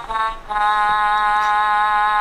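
Chicco Basket League elephant basketball toy's electronic game-over sound: a few short beeping notes, then about half a second in a long steady electronic tone. It signals that the countdown has run out and the round is lost.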